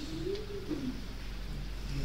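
A single low cooing bird call that rises and then falls, lasting under a second, over a steady low hum.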